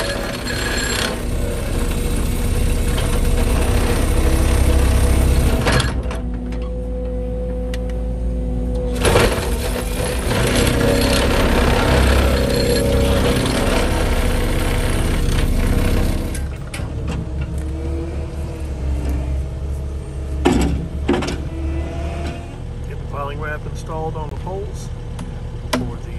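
Excavator-mounted vibratory hammer driving a wooden post down into sand over the excavator's diesel engine, a loud steady vibration that eases briefly about six seconds in and stops about sixteen seconds in. After that a quieter engine keeps running, with a couple of sharp knocks around twenty seconds in.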